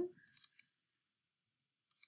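Computer mouse clicking: a quick run of faint clicks just after the start and a single click near the end.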